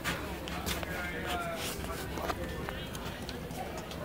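Quiet, indistinct voices with a few sharp clicks or knocks scattered among them.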